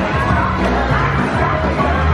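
Upbeat parade music with singing, played loud from a passing character cavalcade float's speakers, with crowd noise beneath it.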